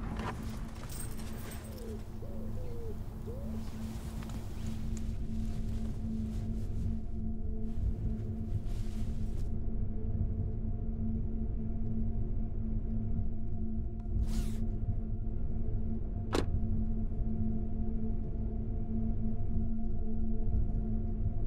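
Dark horror film-score drone: low sustained tones that slowly grow louder. A background hiss cuts out about nine seconds in, a brief whoosh comes about fourteen seconds in, and a short sharp hit follows about two seconds later.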